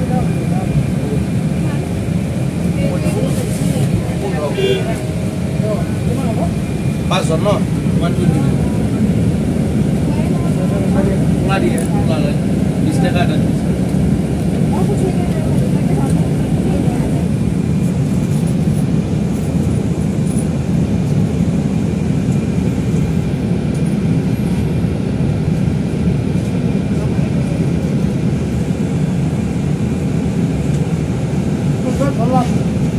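A city bus heard from inside the cabin while it drives: a steady low engine and road rumble, with passengers' voices and a few clicks or knocks in the first half.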